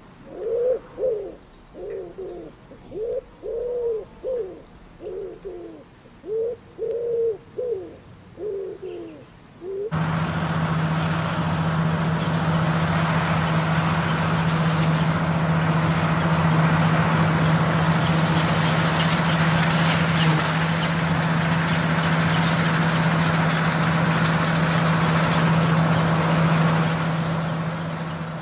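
A pigeon cooing over and over in short repeated calls. About ten seconds in, a Fahr combine harvester takes over, running steadily with a low hum and a broad rushing noise; it is the louder of the two sounds.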